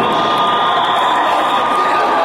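Crowd of spectators cheering and shouting, with one steady high note held through most of it that cuts off near the end.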